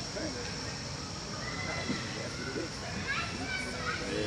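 Background voices, with children playing and calling in the distance.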